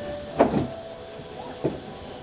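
A few short, sharp knocks or clicks: two close together under half a second in and one more near the end, over a faint steady hum.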